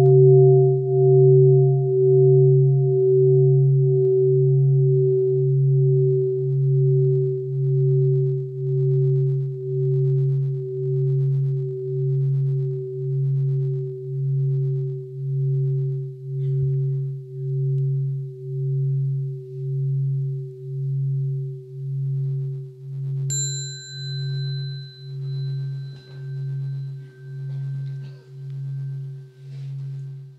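Large bowl bell ringing out after a strike, its low hum pulsing about once a second as it slowly fades. About two-thirds of the way in, a higher-pitched bell tone is struck once and rings on over it.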